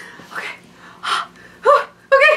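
A woman gasping and breathing hard in a fit of helpless laughter: three breathy gasps, then a short voiced laugh sound near the end.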